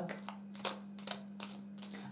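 A few faint clicks and taps of a tarot deck being handled in the hands, over a steady low hum.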